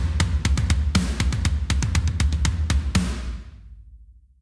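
Programmed metal drum part played back from a sampled acoustic kit by Unwavering Studios: a rapid run of tom and kick hits with cymbals over a low rumble, lasting about three seconds. It ends on a final hit that rings out and fades. The tom hits have hand-varied velocities to make them sound like a real drummer.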